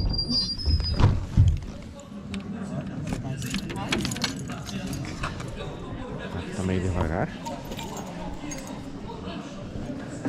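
A bunch of keys jangling, with scattered clicks and knocks through the first few seconds and a brief high squeak right at the start. Voices murmur in the background.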